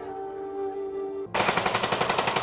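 Soft held music notes, cut off about a second and a third in by a pneumatic jackhammer that starts suddenly and hammers loud and fast at an even rate, breaking up concrete.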